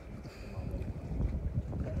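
Wind buffeting the microphone, a low rumbling gusty noise.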